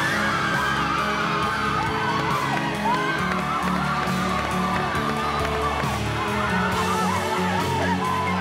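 A group of women screaming and shrieking with joy, many voices at once, over background music.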